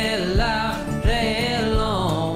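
Soundtrack song: a singer holds two wavering sung phrases, the second starting about a second in, over a steady drum beat.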